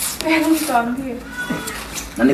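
A person's voice making a drawn-out wordless sound that glides in pitch, lasting about a second.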